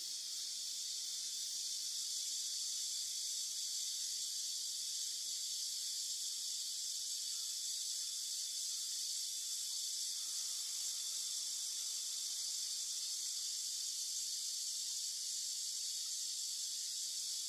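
Steady, high-pitched drone of an insect chorus in summer woodland, unchanging throughout.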